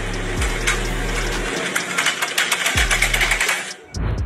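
Fast, continuous rattling clatter of a tall stack of ceramic plates, stopping shortly before the end.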